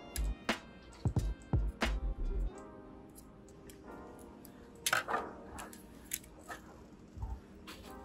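Background music with a scatter of sharp plastic clicks and taps from handling a printer's duplex-unit roller assembly and working its fixing pin back into place with a screwdriver. There are several clicks in the first two seconds and a cluster of them about five to six seconds in.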